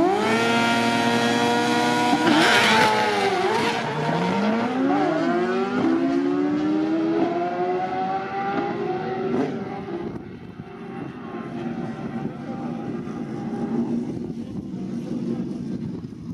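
Two drag-racing motorcycles launching off the start line: the engines rev up sharply and hold high revs for a couple of seconds, then drop and climb in pitch several times through the gear changes. The sound fades as the bikes pull away down the strip.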